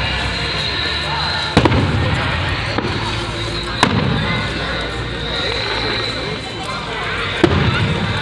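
Aerial fireworks bursting: three sharp bangs, about one and a half, four and seven and a half seconds in, each trailing off in a low rumble.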